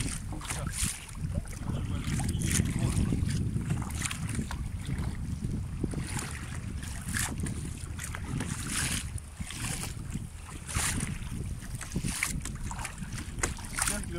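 Wind buffeting the microphone in a steady low rumble, with the splashes of kayak paddle blades dipping into the sea at irregular intervals of about a second or two.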